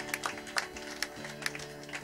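Live band music with a steady held chord, under a few scattered hand claps as the applause dies away.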